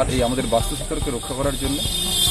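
A man talking in Bengali, with a steady high-pitched hiss underneath.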